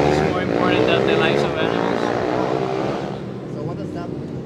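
A motor vehicle's engine passing on the street, loud at first with its pitch rising slightly, then fading away about three seconds in.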